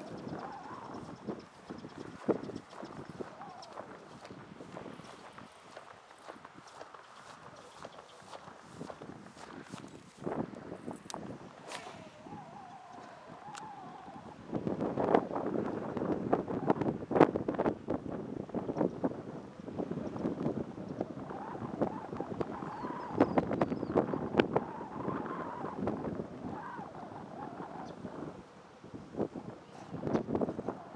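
Wind buffeting the microphone, much louder and gustier from about halfway through, with scattered sharp clicks and taps in the first half.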